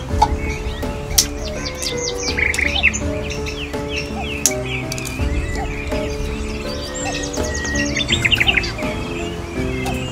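Birds chirping over soft background music with held, slowly changing notes. A quick series of chirps comes about eight seconds in, and there are a few sharp clicks.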